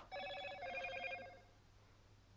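Smartphone notification tone: a short electronic chime of a few ringing notes, lasting just over a second.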